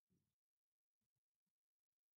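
Near silence: the audio is essentially empty, with no audible sound.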